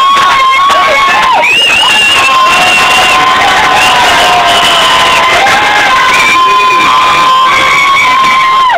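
A group of people cheering together in one long, loud shout, several voices holding high notes at once without a break.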